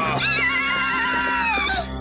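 Cartoon horse whinnying in one wavering call of about a second and a half, over background music.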